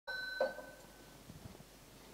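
A ringing tone that starts abruptly and fades out after about a second, with a brief louder sound shortly after it begins; then faint room tone with a few soft knocks.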